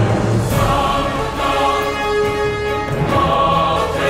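Background choral music: a choir holding sustained chords, the harmony shifting every second or so.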